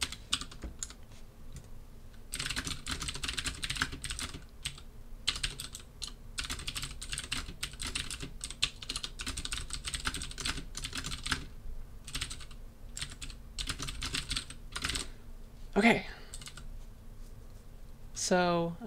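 Typing on a computer keyboard: sparse keystrokes at first, then a fast dense run of key clicks for several seconds, thinning out to scattered presses. A brief vocal sound about two seconds before the end is the loudest moment.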